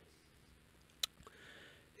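Near silence: quiet room tone, with a single short click about a second in.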